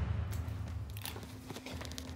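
Low room noise with a steady low hum and scattered faint clicks and crackles of handling.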